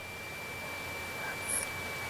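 A pause in speech holding a faint steady high-pitched tone over low background hiss, an electrical whine in the radio recording.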